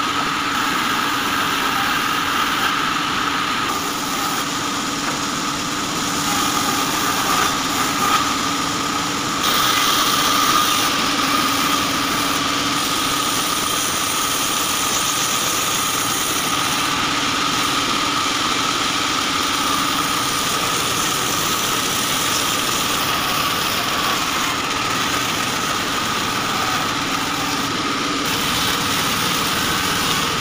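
Belt-driven band saw running steadily with a steady high-pitched tone as its blade rips lengthwise through a log; it gets somewhat louder for a few seconds about ten seconds in.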